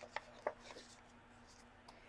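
Pages of a hardcover picture book being handled and turned: a few short paper rustles and soft taps, the loudest about half a second in.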